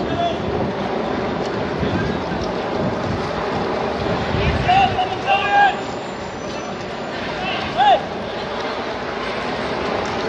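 Outdoor street noise with wind buffeting the microphone as the camera moves. A few short calls from people's voices come through about five seconds in, and one louder brief call near eight seconds.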